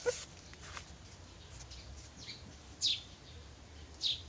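Small birds chirping: a few short, high, isolated chirps, the clearest one near three seconds in, over a faint low background hum.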